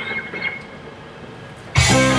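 Electric guitar and electric bass guitar start playing together suddenly and loudly near the end, after a quiet stretch with a brief cough at the start.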